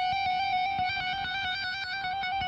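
Stratocaster-style electric guitar playing a fast, continuous hammer-on and pull-off trill between the 14th and 15th frets of the high E string (F sharp and G).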